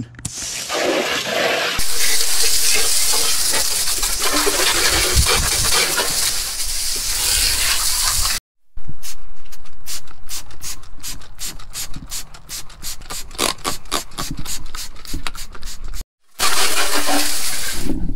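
Water spraying hard from a garden hose nozzle onto a car's engine bay: a loud, steady hiss. It breaks off abruptly and gives way to a hand trigger spray bottle squirted rapidly, about four squirts a second. Near the end it breaks off again and the hose spray returns.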